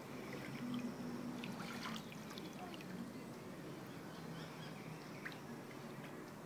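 Pool water lapping and sloshing softly, with scattered small splashes and drips, as a floating person is moved slowly through it.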